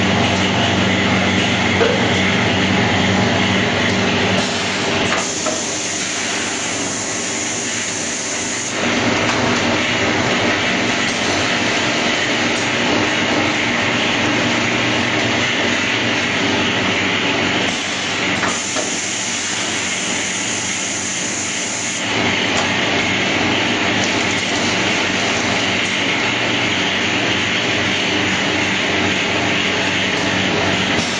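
Automatic packaging machinery running: a continuous mechanical running noise with a steady low hum. Its character changes a few times, about 4, 9, 18 and 22 seconds in.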